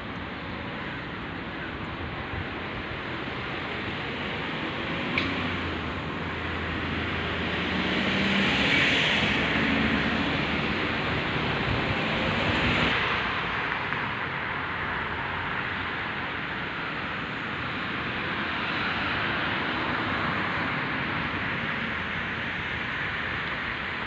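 Steady road traffic noise, a hiss of passing cars, with vehicles passing and swelling then fading about a third and half of the way in.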